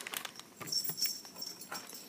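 Faint rustling and light taps from plastic bags and a silicone mould being handled on a table. A thin, steady high-pitched tone runs through the middle of it.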